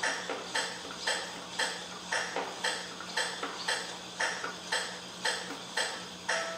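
Metronome clicking steadily about twice a second, keeping the beat for a violin vibrato exercise, over a faint steady low hum.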